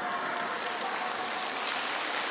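A crowd clapping and laughing, an even patter of many hands.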